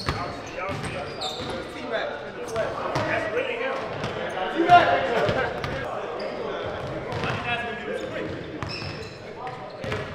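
A basketball bouncing repeatedly on a hardwood gym floor, with players' voices talking around it. The sounds echo in the large gym hall.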